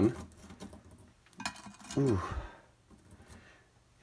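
Light taps and scratchy scrapes of hard, dried starfish being set down one by one in an empty glass baking dish.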